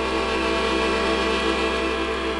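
Piano accordion holding one sustained chord, its reeds sounding with a fast, even waver.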